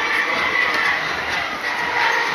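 Deca Dance fairground ride running at speed: a steady mechanical noise from its spinning gondolas and rotating platform.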